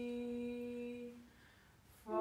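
Unaccompanied hymn singing: one long held note that fades out a little after a second in. A short breath-pause follows, and the next phrase starts at the very end.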